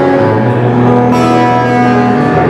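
Live band music led by an amplified acoustic guitar, with chords and notes held steady, in an instrumental gap between sung lines.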